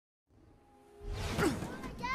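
Silence, then a film soundtrack fading in: a whoosh sound effect over music and low rumble, getting loud about a second in.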